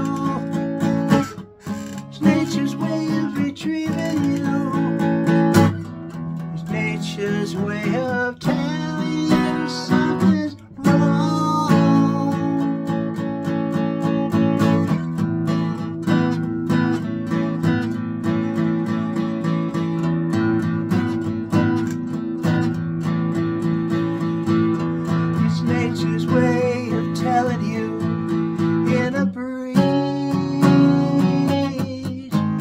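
Acoustic guitar playing an instrumental passage of chords, with no singing.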